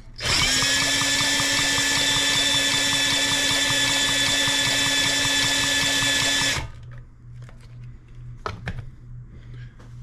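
DeWalt cordless drill, fitted with a 3/4-inch socket, spinning the flywheel of a Honda GCV190 mower engine at a steady speed to test for spark. It runs for about six and a half seconds and stops suddenly, followed by a couple of light clicks.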